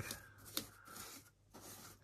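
Faint scratchy brushing of a paint brush's bristles scrubbing WD-40 over a dirty plastic Traxxas Summit body shell, with one light click about half a second in.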